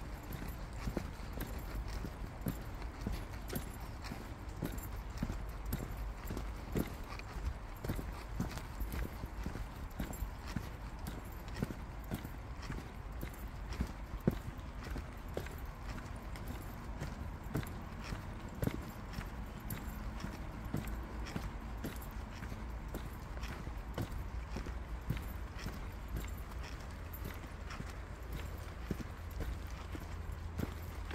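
Footsteps of a walker on a packed dirt trail at a steady walking pace, a run of irregular soft knocks, over a steady low rumble.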